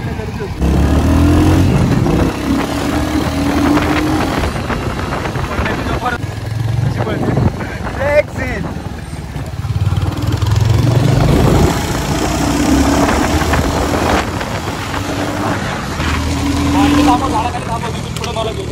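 Royal Enfield motorcycle engine pulling away under a rider and carrying on through traffic, its note rising under throttle less than a second in and swelling again twice, with wind and road noise over it.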